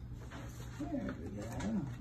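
Low, wordless cooing and murmuring from a person fussing over a cat, over a steady low hum.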